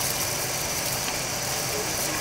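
Car engine idling steadily, a low even rumble under a constant hiss.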